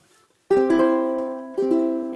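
Baritone ukulele strummed with the meaty part of the thumb near the base of the fretboard, a mellow thumb strum. It comes twice, about half a second in and again about a second later, the chord ringing on after each.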